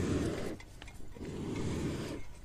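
Bronze-casting furnace running hot, a steady low rushing noise, as the metal in its crucible is brought up toward pouring temperature of about 1150 degrees. The rush eases for a moment about half a second in, then comes back.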